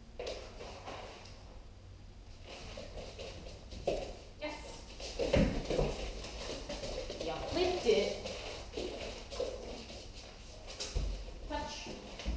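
A woman's voice talking softly to a dog, with handling noises, and a dull thump about eleven seconds in.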